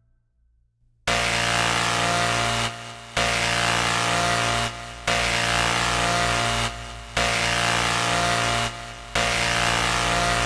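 Harsh, distorted trailer soundtrack: after about a second of silence, a loud buzzing, grinding chord starts and pulses on and off in blocks, about one every two seconds.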